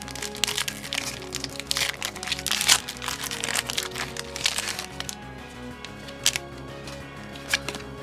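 Foil wrapper of a Pokémon Shining Fates booster pack being torn open and crinkled by hand, dense crackling for the first five seconds, then a couple of single crinkles near the end, over background music.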